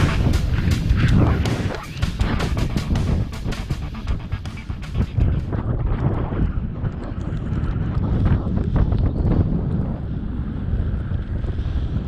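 Background rock music with a steady beat for about the first five seconds, then a low wind rumble on the microphone of a camera carried downhill by a moving snowboarder.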